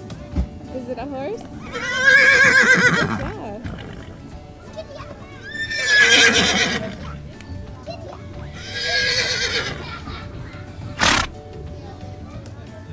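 Horse whinnies, three of them, each about a second long with a wavering, shaking pitch, over steady background music. A brief sharp sound comes near the end.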